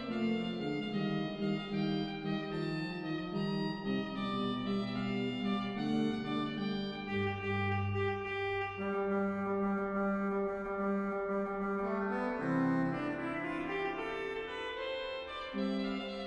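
Organ playing a trumpet tune: a reedy melody over sustained chords, with a deep pedal note about seven seconds in.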